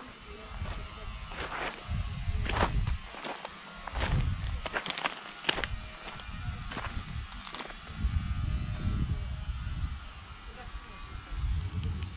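Footsteps crunching on a pebble shore at a walking pace, about two steps a second, with gusts of low wind rumble on the phone's microphone.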